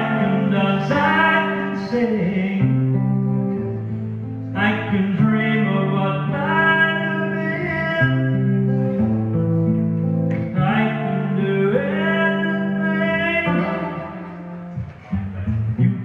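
Live solo performance: guitar accompaniment with a sliding lead melody line over it, coming in phrases a few seconds apart.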